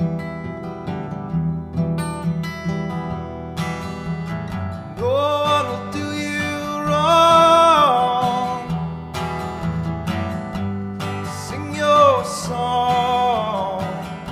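Acoustic guitar played through a folk song's instrumental break, with a voice joining in long wordless sung notes about five seconds in and again near the end.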